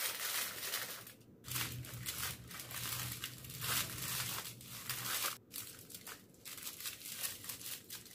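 Aluminium foil crinkling and rustling in irregular bursts as hands roll it tightly around a log and twist its ends shut, broken by two short pauses.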